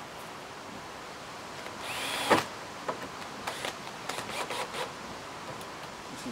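Cordless drill run in one short burst about two seconds in, its whine rising and falling within about half a second, followed by a few faint clicks.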